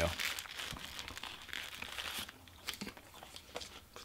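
Paper wrapper of an In-N-Out burger crinkling as it is handled in the hands. It is densest for about the first two seconds, then thins to a few faint crackles.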